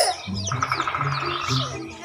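Baby chicks peeping in short, falling, high-pitched chirps over background music with a steady beat.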